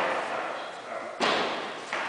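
A body hitting a foam mat in an aikido throw and breakfall: one sharp thud about a second in, trailing off in the reverberant hall.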